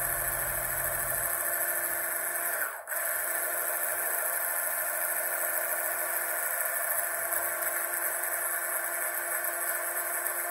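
Electric hand mixer with a whisk attachment running steadily, whisking a liquid mixture into foam in a glass beaker. The sound briefly drops out just before three seconds in.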